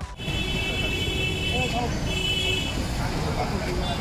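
Street noise: people talking in a crowd over passing traffic, with a high, steady horn-like tone sounding twice, first for over a second and then briefly about two seconds in.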